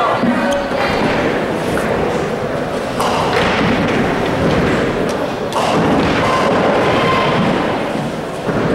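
Ninepin bowling balls rolling down the lanes and crashing into pins, with heavy thuds at about one second, three seconds and five and a half seconds in.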